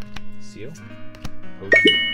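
Background music with held tones, a few sharp clicks of trading cards being shuffled by hand, and a bright chime ringing out near the end.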